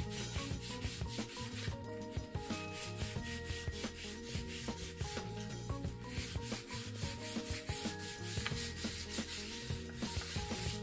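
Fingers rubbing colour in circles on a paper plate, a steady dry scratchy rubbing of many short strokes that blends the colours together, with soft background music underneath.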